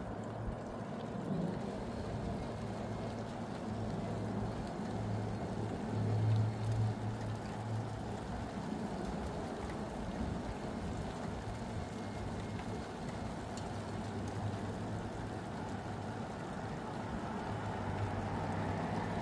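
Steady hiss of falling rain, with a low rumble underneath that swells a few times, most strongly about six seconds in.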